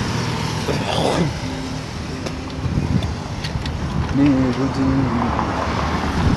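Road traffic on a busy avenue: a steady noise of passing cars, with one vehicle sweeping past about a second in.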